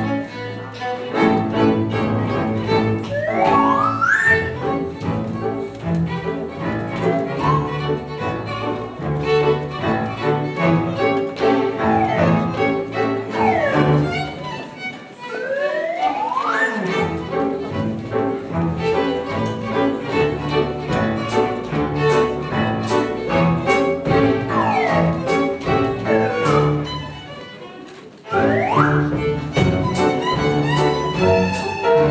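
A live small ensemble plays: a violin leads over piano, cello, double bass and drums. The violin slides up and down in pitch several times. The music drops away briefly about two seconds before the end, then comes back in loud.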